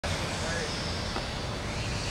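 Steady low outdoor rumble with faint voices in the background.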